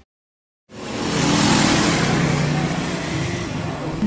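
Street traffic noise with a steady engine hum, fading in from silence in the first second.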